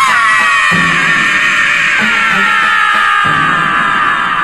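A long held cry, slowly falling in pitch, over dramatic music with low drum beats.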